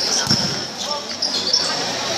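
A futsal ball struck on a hard court, with a thud about a third of a second in, amid high squeaks from play on the court and crowd voices.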